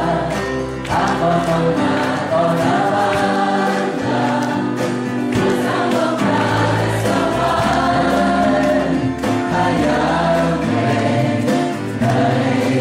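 Live Christian worship song: singing over an acoustic guitar and band accompaniment, with sustained bass notes underneath.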